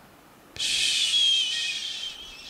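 A man's voice making a long, high hissing whistle with the mouth, starting about half a second in and held for about two seconds, with a thin wavering tone inside the hiss. It imitates the faint ringing sound heard in deep silence.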